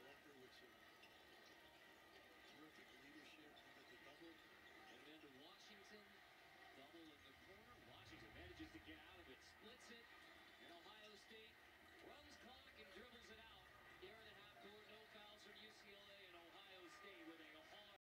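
Very faint, indistinct commentary from a televised basketball game playing on a TV, too quiet to make out words.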